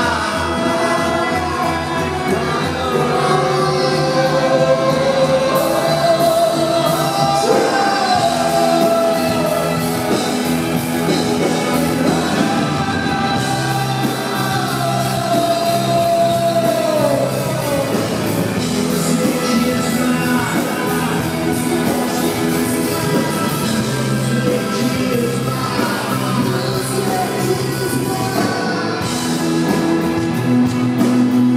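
A rock band playing live, with a male lead singer singing over the band, recorded from the audience.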